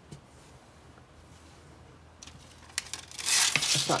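Release liner being peeled off sticky-back Velcro tape: a crackly tearing noise that starts softly about two seconds in with a few clicks and is loudest over the last second.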